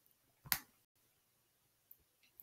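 A single short, sharp click about half a second in, against near silence.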